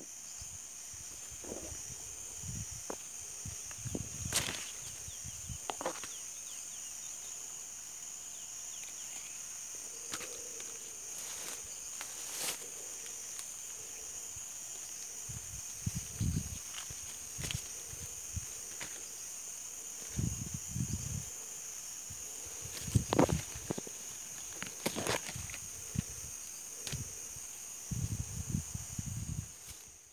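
A steady, high-pitched drone of insects runs throughout. Over it come irregular rustles, snaps and low bumps of leaves and branches being pushed aside and persimmons being handled on the tree, heaviest in the second half.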